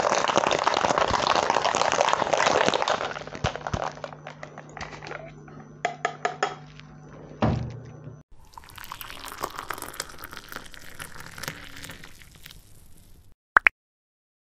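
Ice rattling hard inside a metal cocktail shaker for about three seconds, then scattered metallic clicks and knocks as the shaker is opened and handled. Later a quieter, steady splashing as the mixed whiskey sour is poured from the shaker tin into a glass.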